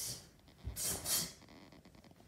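A karate student's sharp, hissing exhalations timed with kicks and punches, with bare feet thudding on a hardwood floor: a short breath at the start, then a low thud followed by two more forceful breaths about a second in.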